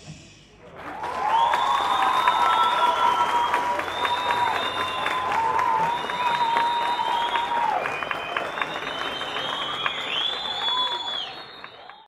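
Audience applauding hard, with long shrill whistles and cheering over the clapping; it swells up about a second in and fades near the end.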